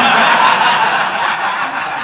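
An audience laughing together, breaking out suddenly and slowly easing off.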